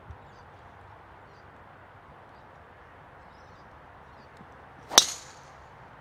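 Golf driver striking a teed ball on a full tee shot: one sharp, loud crack about five seconds in, after a few quiet seconds.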